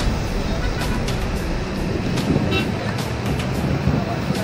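Road traffic on a wet bridge, with cars passing, mixed with background music and voices.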